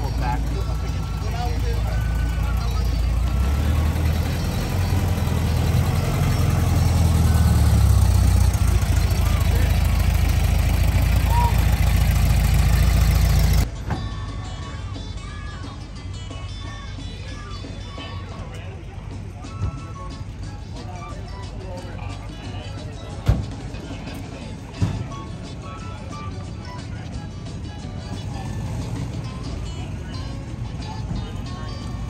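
Air-cooled Volkswagen Beetle flat-four engine running as the car pulls in. It is a low rumble that grows louder over the first several seconds and cuts off suddenly about 14 seconds in. It gives way to quieter background voices and music with a few short knocks.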